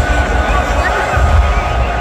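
Stadium public-address system playing music and a voice that echoes around the stands, over crowd noise and a heavy low rumble.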